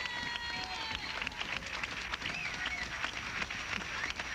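Audience applause: many hands clapping in a dense, even patter.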